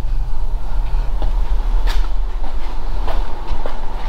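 A steady low rumble with a few light clicks and knocks.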